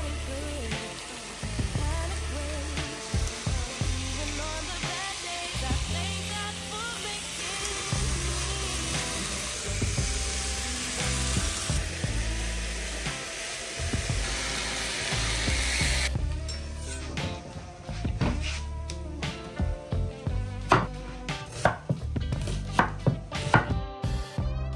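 Food sizzling in a frying pan under background music with a stepping bass line. About two-thirds of the way through the sizzling stops and a knife chopping on a board takes over, in sharp, irregular knocks that grow louder toward the end.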